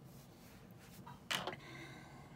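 A single short, sharp knock about a second and a quarter in, as small objects are handled on a work table, over faint room noise.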